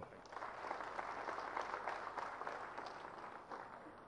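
Audience applauding after a speech, a dense patter of many hands clapping that swells just after it begins and fades out near the end.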